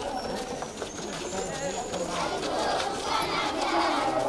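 A group of schoolchildren's voices calling and chanting together while they play a ring game, with several voices overlapping throughout.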